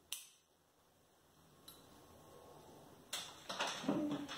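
A single sharp snip of ikebana scissors cutting through a branch stem just after the start. Near the end comes a burst of rustling and knocking as plant material is handled.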